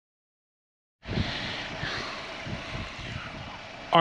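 About a second of silence, then outdoor background noise starts abruptly: a hiss with irregular low rumbles of wind on the microphone, fading gradually.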